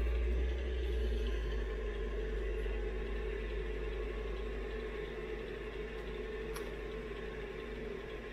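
Steady low hum with an even hiss above it, the sound of a running machine in a small room, slowly growing a little quieter; a faint click about six and a half seconds in.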